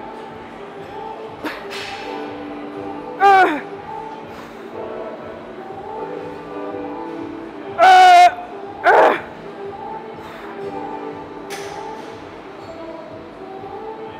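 A woman vocalising with effort while lifting a heavy barbell: three loud strained grunts over background music. A falling one comes a few seconds in, then two close together past the middle, the first held about half a second with a wavering pitch.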